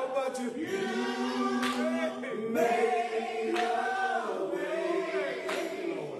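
A group of men singing a gospel song together into microphones, in long held notes that slide between pitches, with no clear instrumental backing.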